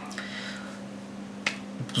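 Quiet room tone with a steady low hum and one sharp click about one and a half seconds in, in a pause between speech.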